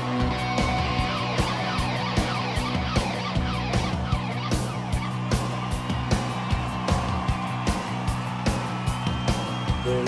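Live rock band playing an instrumental break: an electric guitar lead with sliding and bending notes over driving drums and bass.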